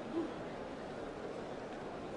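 Steady, even background noise, with one brief low tone just after the start.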